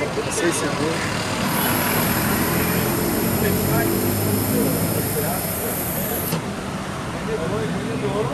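Breath blown steadily into a police breathalyzer. A thin, steady high-pitched tone starts about a second and a half in and cuts off suddenly about six seconds in.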